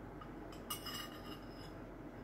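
A metal spoon clinking against a soup bowl: one main clink a little under a second in that rings briefly, with a couple of fainter taps around it.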